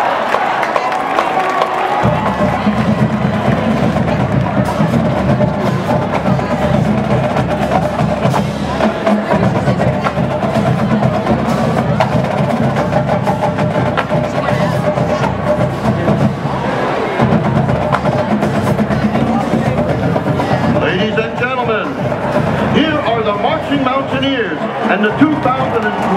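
Marching band drumline playing a cadence: snare and bass drums beating in a steady marching rhythm, starting about two seconds in. An announcer's voice comes in over the drums near the end.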